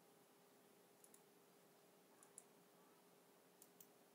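Near silence with faint computer mouse clicks in three quick double-click pairs, about a second apart, over a faint steady hum.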